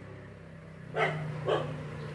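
A dog barking twice, half a second apart, quieter than the nearby speech, over a steady low hum.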